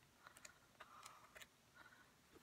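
Near silence with a few faint soft clicks and rustles as sheets of a large pad of patterned scrapbook paper are turned over.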